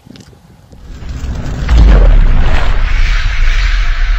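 Cinematic logo sting: a rising whoosh from about a second in, then a sudden deep boom with a long low rumble and a hissing swell ringing on under it.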